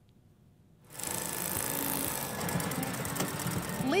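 Industrial sewing machine running steadily, starting about a second in after a brief near silence.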